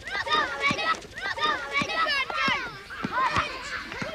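A group of children shouting and calling out to each other, many high voices overlapping, as they run about playing a ball game.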